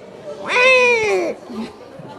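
A single high-pitched vocal cry, a little under a second long, sliding down in pitch.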